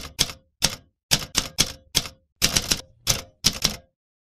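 Typewriter sound effect: a run of about a dozen sharp key strikes at an uneven pace, one for each letter of text being typed out.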